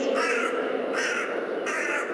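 A bird cawing three times, about two-thirds of a second apart, over a steady low background din.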